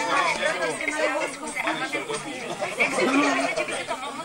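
Several people talking at once: indistinct, overlapping chatter of a small gathering.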